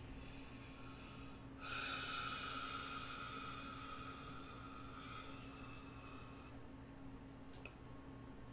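A long, slow breath out through the nose into hands held over the face: a soft hiss that starts suddenly about a second and a half in and fades away over about five seconds. A single faint click comes near the end.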